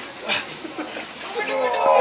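People's voices: short scattered exclamations, then a drawn-out call that grows louder near the end.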